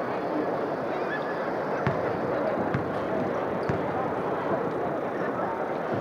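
Arena crowd chatter, a steady murmur of many voices with scattered calls, and three short thuds about a second apart near the middle.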